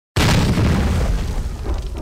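A deep cinematic boom sound effect for a logo intro. It hits suddenly just after the start and dies away slowly in a long rumbling tail.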